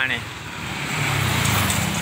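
A motor vehicle passing on the road, its low engine rumble growing louder through the second half.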